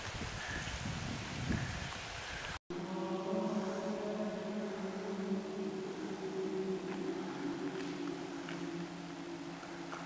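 Faint outdoor ambience, then, after an abrupt cut, choral chant: a choir singing slow, long-held notes that run on steadily.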